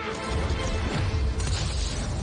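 Fight-scene soundtrack from a drama: a crashing impact effect with a heavy low rumble that sets in about a quarter second in, laid over music.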